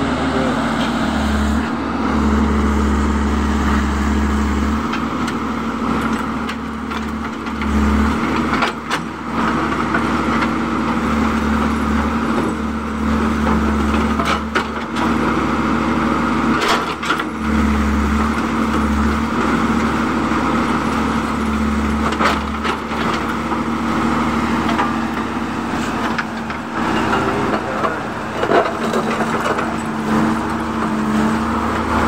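JCB 3DX backhoe loader's diesel engine running steadily under load as the backhoe arm and bucket work, its low rumble swelling now and then. Several sharp knocks are scattered through it.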